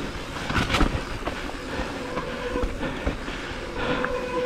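Mountain bike rolling fast down a dirt trail: tyre rumble on the dirt with a continuous rattle and clatter of the bike over bumps, and a couple of sharper knocks just under a second in.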